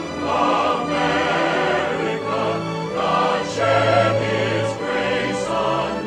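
Choral soundtrack music: a choir singing long held chords with vibrato that change every second or so.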